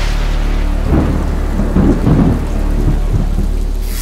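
Thunder sound effect: a loud rushing hiss like heavy rain over a deep steady drone, with crackling thunder rumbles strongest in the middle.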